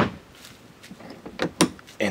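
A boat's live-well hatch lid shut with a single sharp clack, followed by a couple of lighter clicks about a second and a half later.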